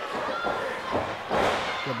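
One heavy thud about one and a half seconds in: a wrestler's body landing on the ring canvas after losing a tug of war, over the murmur of a crowd in a hall.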